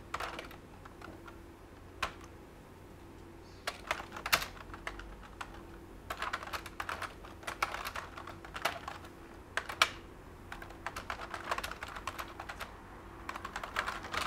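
Typing on a computer keyboard: irregular bursts of keystrokes separated by short pauses.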